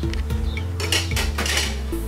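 Dishes clinking and clattering: a bowl and its lid handled on a serving tray, a quick run of light knocks and clinks over background music.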